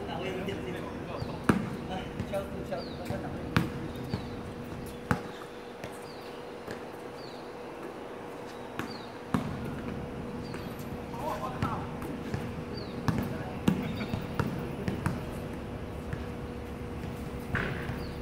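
A basketball bouncing on an outdoor hard court during a game: separate sharp thuds every few seconds, with players' voices.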